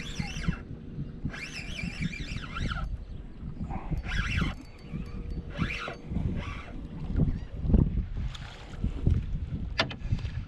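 Birds calling in several short bursts of high, rapidly wavering notes over a steady low rumble of wind on the microphone.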